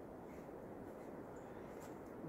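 A quiet pause: faint steady background noise with no distinct sound standing out.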